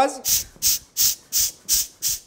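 Mini air pump pushing air out of its nozzle right at the microphone: five quick hissing puffs, about three a second, one for each press of the plunger.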